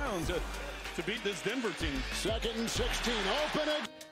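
Football TV broadcast audio playing quietly in the background: a commentator talking over steady stadium crowd noise.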